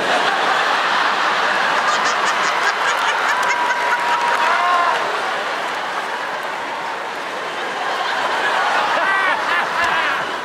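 Large theatre audience laughing and cheering, with some clapping, loudest in the first half.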